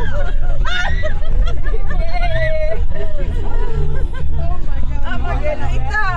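Music from the SUV's sound system: a singing voice with long held notes over a steady low beat, heard inside the moving vehicle's cabin.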